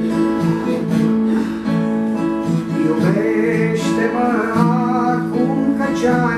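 Acoustic guitar strummed and picked in a steady chordal accompaniment; about halfway through, a singing voice comes in over it.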